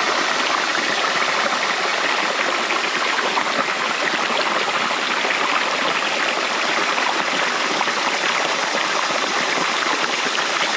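Shallow creek rushing steadily over and through a jam of branches and logs, a constant splashing rush of water.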